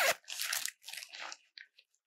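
Nylon fabric of a Granite Gear Nimbus Trace backpack rustling and crinkling under hands working its front access panel: a few short scuffs, the first the loudest, growing fainter.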